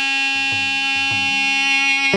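Carnatic music: a single melodic instrument holds one long, steady note.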